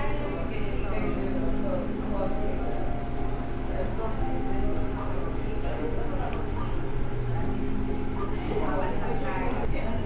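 Café ambience: background music with long held notes over a steady low hum, with faint voices.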